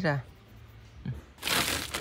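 A woven plastic sack handled by hand: a short burst of rustling starting about a second and a half in.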